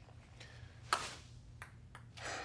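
A ping pong ball being hit: one sharp click with a brief ringing about a second in, and a few fainter ticks around it.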